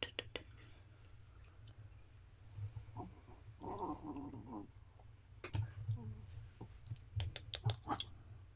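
Close-microphone mouth clicks and kissing sounds, in quick runs at the start and again near the end, over a steady low rumble. About halfway through comes a brief pitched sound about a second long.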